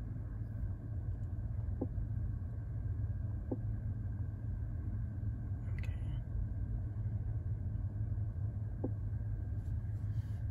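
Steady low rumble inside a parked electric car's cabin, with a few faint ticks and a brief tap of a finger on the touchscreen about six seconds in.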